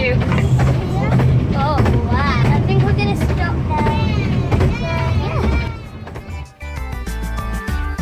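Low rumble of a moving narrow-gauge railway carriage, heard from inside, with people's voices over it. About six seconds in, this gives way to background music.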